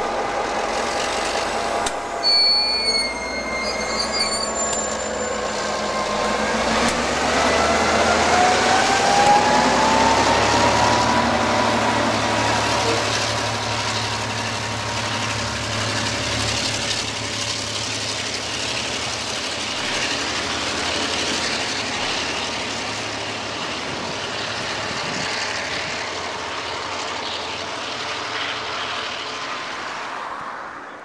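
KiwiRail DC class diesel-electric locomotive pulling a suburban passenger train away from the platform: the engine powers up from idle with a rising whine, then the train runs on steadily, easing off near the end. A brief high tone sounds about two seconds in.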